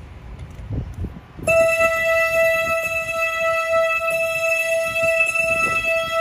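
A single organ-like keyboard note through a loudspeaker, starting about a second and a half in and held steady, as music for a moment of silence. Before it there is only wind on the microphone.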